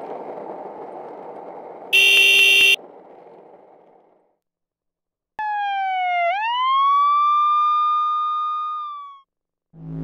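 Skateboard wheels rolling on asphalt fade away, cut by a short, loud horn blast about two seconds in. After a second of silence an emergency siren starts: one wail that dips, sweeps up, holds and fades out.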